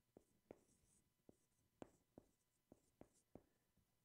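Faint sound of a marker writing on a whiteboard: short scratchy strokes with irregular little taps as the tip meets the board.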